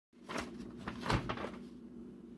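A few knocks and clicks, the loudest about a second in, over a faint steady low hum.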